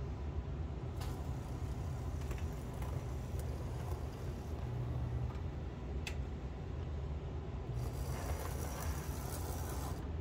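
Scratch-built model locomotive with worm-gear-driven powered trucks running slowly along the track: a steady low mechanical hum from its small motor and gearing, with a few sharp clicks.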